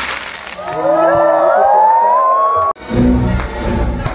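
Show soundtrack music and a crowd cheering, with several whoops rising in pitch. About two-thirds of the way through, the sound cuts off suddenly, and the music comes back in with a deep bass.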